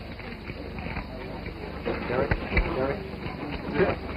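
Indistinct voices of people in a crowded room, faint and muffled over the steady noise of a worn, low-fidelity recording. Brief louder voice fragments come about two seconds in and again near the end.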